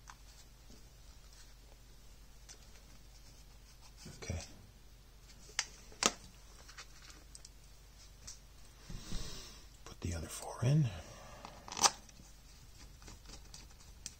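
Plastic battery pack case being handled and screwed together with a small precision screwdriver: a few sharp clicks about four and six seconds in, a scuffling, rustling stretch around nine to eleven seconds, and a last sharp click near the end.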